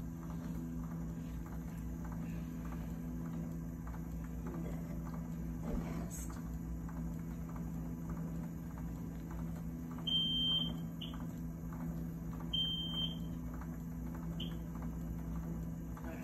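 Steady low hum of running equipment, with two high electronic beeps a couple of seconds apart past the middle, each followed by a short chirp.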